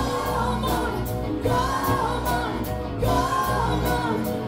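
Live band playing a song: singing over electric guitars, bass and a drum kit keeping a steady beat.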